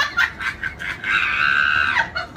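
Pomeranian puppy barking in quick, high-pitched yaps, then a longer drawn-out yelp lasting about a second, beginning about a second in.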